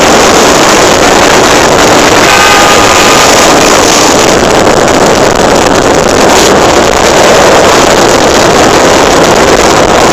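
Motorcycle travelling at road speed: loud, steady wind rush on the microphone over the drone of the engine. A short pitched tone sounds briefly about two and a half seconds in.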